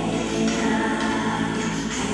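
Choral music: a choir singing sustained, held chords.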